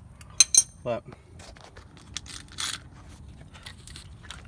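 Metal wrench clinking against metal: two sharp, ringing clinks about half a second in, then scattered lighter clicks and a short scrape near the middle.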